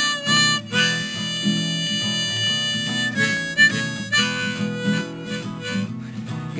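Harmonica solo played from a neck rack over a strummed acoustic guitar. The harmonica holds one long note for about two seconds, then plays shorter notes.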